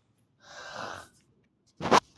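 A person's breathy exhale lasting under a second, followed near the end by a short, sharp, loud burst of breath.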